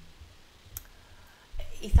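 A lull in the talk with one sharp, short click about midway, then a low thud as a woman's voice comes back in near the end.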